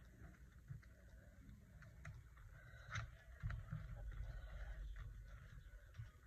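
Glue stick being rubbed over paper on a journal page: faint rubbing and handling noise with a few soft taps, loudest from about three seconds in.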